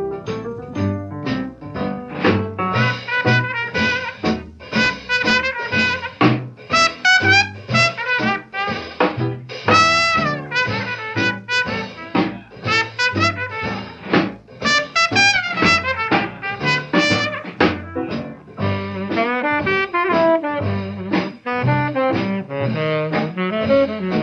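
Instrumental break of a 1930s small-band swing jazz record: saxophone and brass play melodic lines over a steady swing rhythm section, with no singing.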